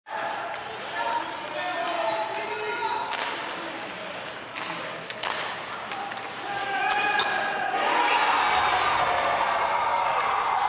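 Ice hockey play: sharp clacks of sticks and puck on the ice and boards, several in the middle, over a voice. About three quarters of the way in the sound swells into louder crowd noise as a goal is scored.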